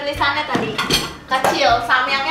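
A few sharp clinks of dishes as a plate is set down.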